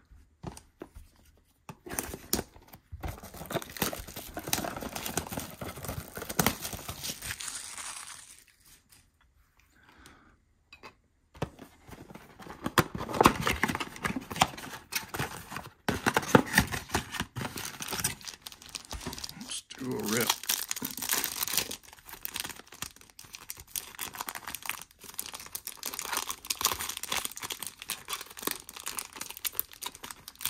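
A cardboard trading-card blaster box is torn open and plastic card-pack wrappers are ripped and crinkled by hand. The crackling and tearing comes in spells, with a pause of a few seconds about nine seconds in.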